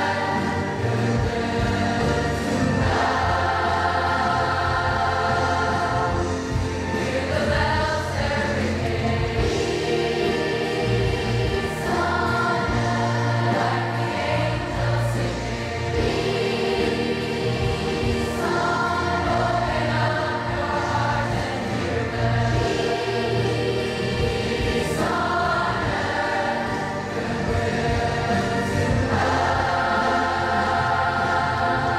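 A large children's and youth choir singing in full chords, holding long notes in phrases of a few seconds each, over a sustained low accompaniment.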